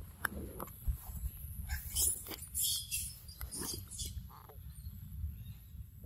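A pig-tailed macaque biting and chewing a ripe mango: a run of short, crackly mouth sounds about two to four seconds in, over a low steady rumble.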